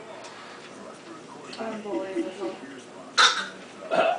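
Faint talking in a room, then one short, sharp vocal burst about three seconds in, like a hiccup or a gasp of laughter.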